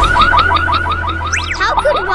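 Cartoon car-alarm sound effect: a rapid run of short rising electronic chirps, about five a second, with a quick whistle-like glide up and back down in the middle.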